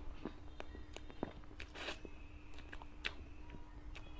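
Close-miked mouth sounds of someone eating soft cream cake: wet lip smacks and tongue clicks while chewing, with a longer soft smack just before two seconds in.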